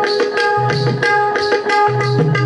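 Dholki drum solo: rapid strokes on the treble head over deep, ringing bass-head strokes, with a steady sustained tone running behind the drumming.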